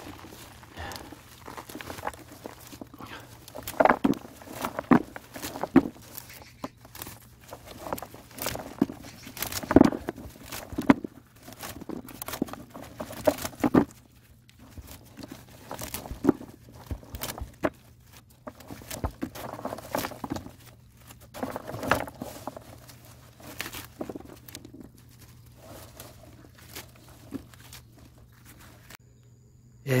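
Freshly dug peanut plants being shaken and handled: leaves and stems rustling, with irregular knocks and taps as soil and pods fall onto plastic mulch and into a plastic basin.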